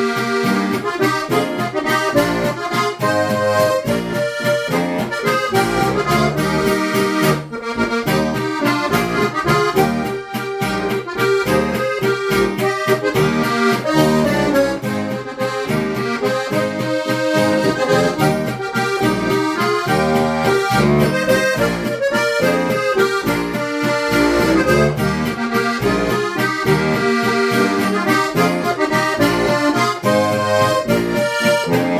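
Lanzinger diatonic button accordion (Steirische harmonika) playing a lively traditional folk tune. The treble melody runs over a steady, rhythmic bass-and-chord accompaniment.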